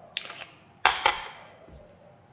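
Handling sounds of an airsoft pistol and its full-metal gas magazine: light clatter, then one sharp metallic click a little under a second in.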